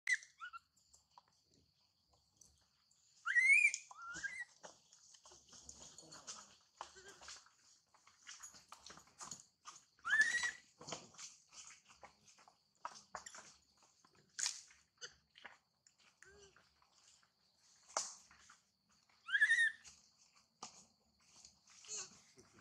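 Newborn long-tailed macaque crying in high, shrill squeals that glide up and fall away, three loud ones about seven seconds apart with softer squeaks and small clicks between, over a steady high-pitched drone.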